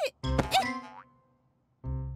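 Cartoon sound effect of a fall: a springy rising boing with a sudden bump, ringing out within about a second. After a short gap, the children's song accompaniment comes back in with a low note near the end.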